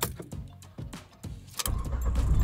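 Car ignition key being turned: keys jangling with small clicks, then a low rumble sets in near the end as the car is switched on.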